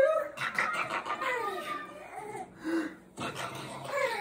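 A baby cooing and babbling in a string of short, rising-and-falling squealing calls.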